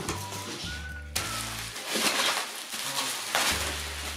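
Bubble wrap crinkling and crackling as a wrapped package is handled, starting about a second in, over quiet background music.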